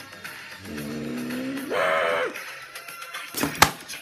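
A drawn-out vocal cry that rises in pitch and gets louder just before the middle, then breaks off, over background music. Two sharp knocks follow near the end, the second the loudest sound.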